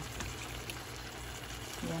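Chicken curry simmering in a pan after being brought to the boil, a steady even hiss of cooking sauce.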